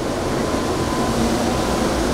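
Steady rushing noise of a shop ventilation fan, with a faint hum under it.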